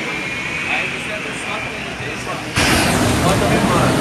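City street noise with traffic and background voices; about two and a half seconds in, a louder rushing noise starts suddenly and keeps on.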